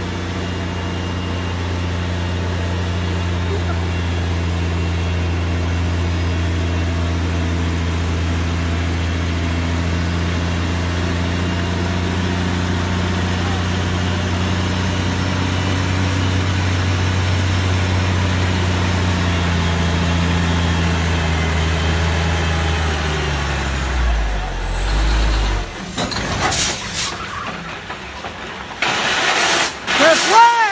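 Diesel engine of a heavy-haul tractor unit towing a bulldozer on a lowboy trailer, running with a steady low drone as it approaches. Its pitch sinks about twenty seconds in as it slows, then a low thump and loud bursts of air hiss follow near the end.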